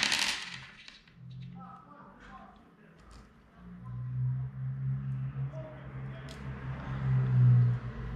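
Rattling clatter of small metal parts from a disassembled warm-up regulator, fading within the first second. Quieter handling noises follow, then a low, uneven hum through the second half.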